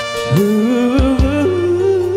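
Dangdut band playing: a lead melody line slides up into a held, wavering note about a third of a second in, over keyboard backing, and two low kendang hand-drum strokes land about a second in.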